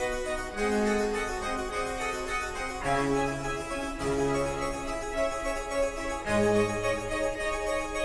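Two-manual harpsichord playing a busy Baroque concerto passage, with strings accompanying over held bass notes that change about once a second.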